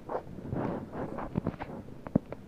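Handling noise from a handheld camera being moved: soft rustling with a few light clicks and knocks in the second half.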